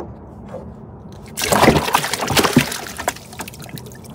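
Water splashing in a cooler as a bluegill goes into it: a burst of splashes about a second and a half in, lasting over a second and then dying away.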